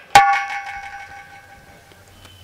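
A single sharp metallic strike just after the start, ringing like a small bell and fading away over about a second and a half.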